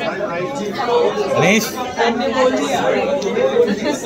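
Overlapping voices: several people talking at once in a steady chatter.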